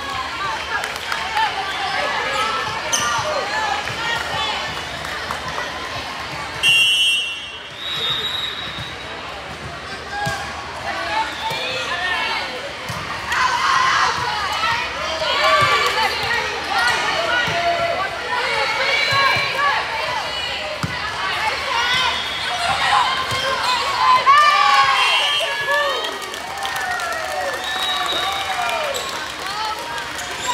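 Indoor volleyball rally: volleyball hits on the hardwood court mixed with overlapping voices of players and spectators calling out. A short referee's whistle blast about seven seconds in is the loudest moment.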